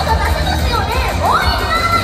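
High-pitched voices shouting in rising and falling calls over a pop backing track with a steady bass, with a crowd cheering.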